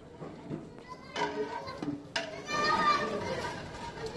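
Background voices of people and children talking and calling, fainter than close speech, including a higher-pitched voice about three seconds in.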